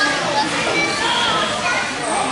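Many children's voices talking and shouting over one another, a steady overlapping chatter of kids at play.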